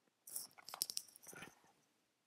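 A short clatter of small clicks and knocks, lasting about a second and a half and starting a quarter second in.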